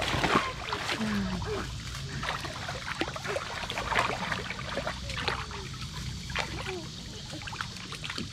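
Shallow water splashing and trickling in many small, uneven splashes as a toddler crawls on hands and knees through it.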